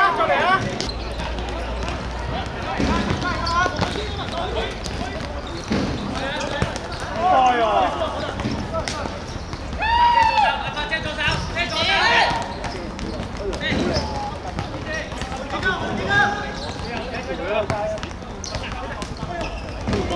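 Five-a-side football on a hard court: a ball being kicked and bouncing, heard as repeated sharp knocks. Players' shouted calls run among the knocks.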